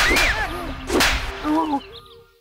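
Two whip-crack sound effects about a second apart, each a sharp crack with a swishing tail, over a few raised voices.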